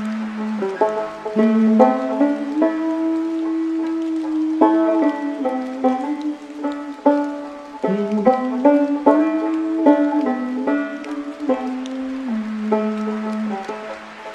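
Slow banjo music: plucked notes ring out one after another over held lower notes.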